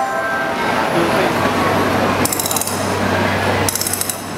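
Stage performance audio. A chiming, music-box-like tune stops just after the start and gives way to a dense crackling noise over a low hum. Two short bursts of high shimmering chimes break in, about two and a half seconds in and again near the end.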